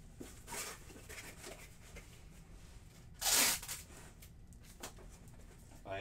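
Packing tape pulled off the roll to seal a small cardboard shipping box: one loud rip about three seconds in, with a fainter, shorter pull earlier.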